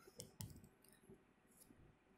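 Near silence, broken by a few faint short clicks in the first half second and one more about a second in.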